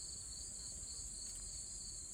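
Steady, high-pitched insect chorus, an unbroken shrill trill at two high pitches, like crickets in a late-summer yard.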